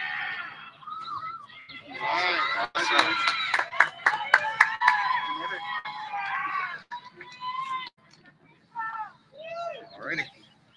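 Shouted voices over a public-address system: a drawn-out shouted drill command and a mass of voices shouting back, with a run of sharp cracks in the middle.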